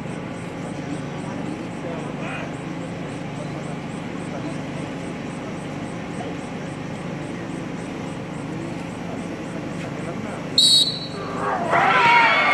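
Steady murmur of a large crowd of spectators, then a short, sharp referee's whistle a little before the end, followed by voices from the crowd rising into shouting as the wrestlers grapple.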